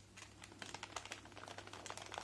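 Fingers handling small plastic bags of fine stainless-steel chains: faint, irregular little clicks and crinkles, several a second.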